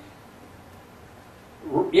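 A pause in a man's sermon: faint, steady room hiss for about a second and a half, then the man's voice starts speaking again near the end.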